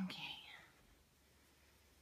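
A brief soft, whispery vocal sound in the first half-second, then near silence: room tone.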